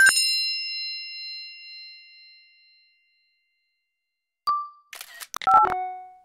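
Generative electronic music: a synthesized bell-like chime struck at the start and ringing out over about three seconds, then a gap of silence, then a short single tone and a quick flurry of clicks and brief blips near the end.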